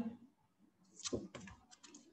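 A quick run of light clicks and taps, like typing on a computer keyboard, starting about a second in and heard over a video call's audio.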